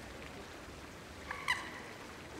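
Small fountain splashing steadily into a garden pond, with a bird giving two short, quick calls past the middle, the second louder.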